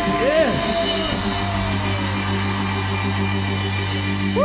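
Live rock band playing: drums, bass guitar and keyboard holding a steady groove, with a sustained note sliding slowly down in pitch and a couple of short swooping glides.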